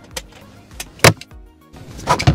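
Faint background music with two light clicks, then one sharp, very loud knock about a second in, followed by a brief drop to near silence.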